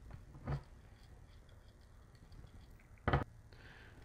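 Faint small clicks and ticks of wire terminals being handled and fitted onto a utility winch motor's terminal posts, with a slightly louder knock about half a second in.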